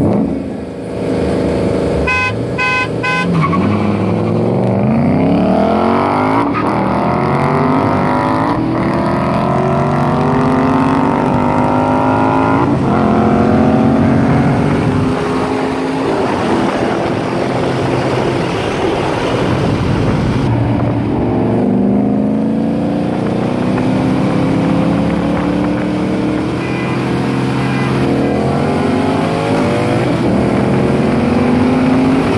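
Two V8 cars, a Ford Mustang GT 5.0 and the car filming it, accelerating hard side by side. The engine notes climb through the gears, with shifts a few seconds apart. They ease off around the middle and pull up again toward the end.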